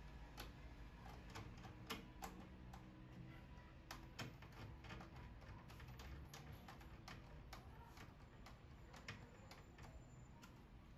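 Faint, irregular small clicks and taps of hands fitting a PCIe card into a desktop PC case and working a screwdriver at its bracket, with the sharpest clicks about two and four seconds in.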